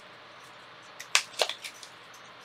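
Cardboard-and-plastic retail packaging of a USB flash drive being handled and pulled apart: a few short, sharp rustles about a second in.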